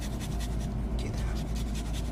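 A utensil scraping rhythmically against a pan as a thick parmesan white sauce is stirred, several quick strokes a second, over a steady low hum.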